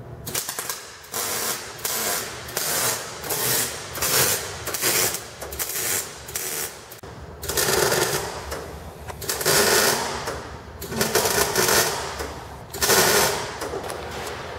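Wire-feed (MIG) welder stitch-welding steel exhaust tubing: about a dozen short crackling, sizzling bursts of arc, each under two seconds, with brief pauses between them and a few longer welds near the end.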